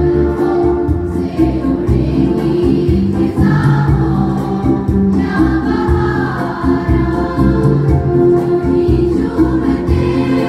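Girls' school choir singing together, the voices amplified through microphones on stands, with sustained notes that change every second or so and no break.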